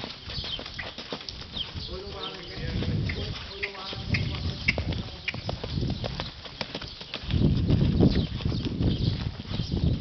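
Hoofbeats of a horse cantering under a rider on a sand arena: a run of short, soft strikes throughout, with swells of low rumble.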